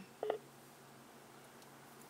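A short electronic beep from a phone, about a quarter-second in, in an otherwise quiet car cabin.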